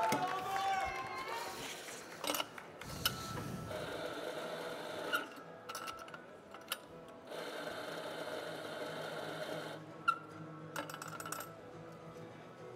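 Espresso grinder motor running in two short bursts, each about two seconds, grinding coffee on demand into a portafilter, with sharp metal clicks from the portafilter being handled between and after the bursts.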